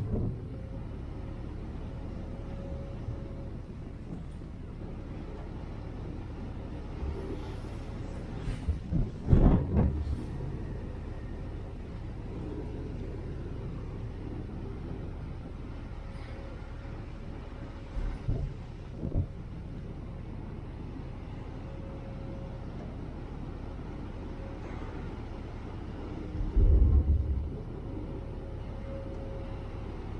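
Passenger ferry under way: a steady rumble of engines and rushing wake water. Wind buffets the microphone in loud gusts about nine seconds in, briefly around eighteen seconds, and again near the end.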